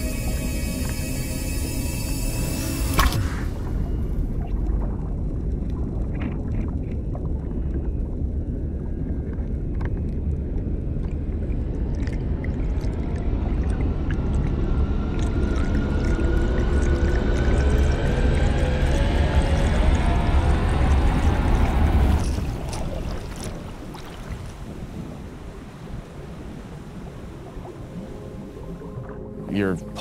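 Soundtrack music cuts off about three seconds in and gives way to a deep, steady underwater rumble. A slow rising tone climbs through the middle of the rumble, which then fades to a much quieter level for the last several seconds.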